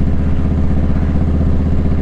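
Motorcycle engine running steadily with a fast, even low pulse.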